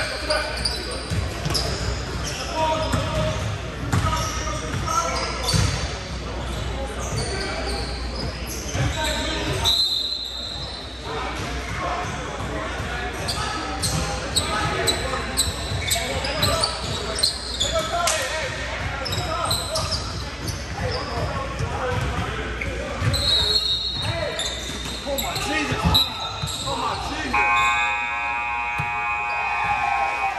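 Basketball game on a hardwood gym court: a ball bouncing and dribbling, sneakers squeaking and players calling out, all echoing in the large hall. A steady pitched tone sounds for about two and a half seconds near the end.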